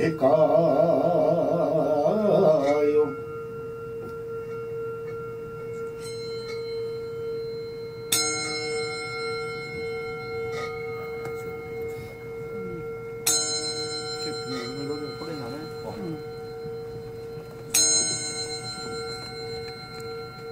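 A brass bowl struck three times, about five seconds apart, each strike ringing bright and slowly fading over a steady held ringing tone. Korean folk singing ends about three seconds in.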